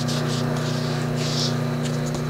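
Steady hum of an electric potter's wheel motor running, with soft rubbing strokes of a wet sponge wiping a wooden board over it.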